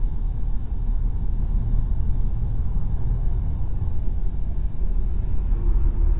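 Steady low road and engine rumble from inside a moving car driving along a highway. Near the end an oncoming semi-truck goes past.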